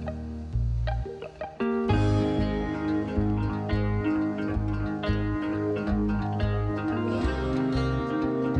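Instrumental background music with a plucked-string part and a steady bass line; it dips briefly about a second in, then comes back fuller.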